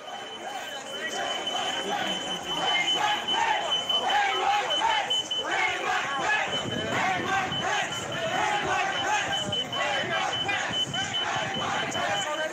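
A crowd of rioters chanting and shouting 'hang Mike Pence', with a door security alarm sounding behind them as a thin, high-pitched steady tone.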